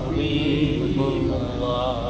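A man's voice chanting a drawn-out Islamic devotional recitation through a microphone, in long held pitched notes.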